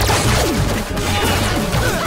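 A sudden crash-and-sparks impact sound effect as a blow lands, hitting at the very start and trailing off in a noisy crackle over fast action music.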